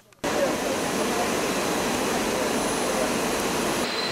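Steady, even background noise of a running textile factory, a constant hiss and hum of machinery and ventilation, cutting in abruptly just after the start.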